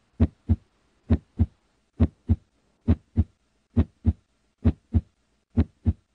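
A heartbeat, a steady lub-dub of paired low beats, about 66 a minute, with silence between the beats.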